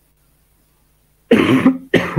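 A man coughing: two loud coughs, the first a little over a second in and the second at the very end.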